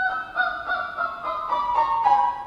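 A young girl singing high, held notes in an academic (classical) style, with piano accompaniment. The voice comes in sharply at the start.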